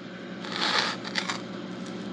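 A brief rustle about half a second in, followed by a few faint light clicks, over a low steady hum.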